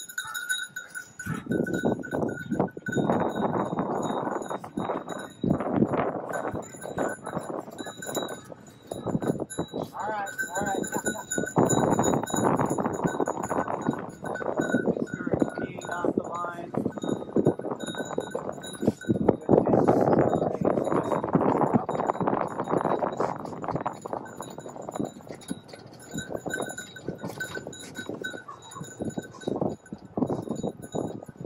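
Side-by-side utility vehicle driving across a rough grassy field: its engine and rattling body are loud throughout, with a steady thin high whine over them.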